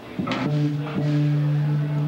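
Amplified electric guitar: a short attack, then a single low note held and ringing on steadily through the amp.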